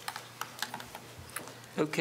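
A few scattered light clicks and taps, like keys or small objects being handled, over faint room noise, then a man starts speaking near the end.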